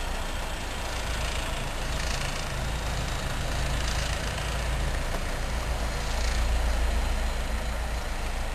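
Class 73 electro-diesel's English Electric four-cylinder diesel engine working hard as the locomotive pulls away, a steady low-pitched thrash that swells a little near the end.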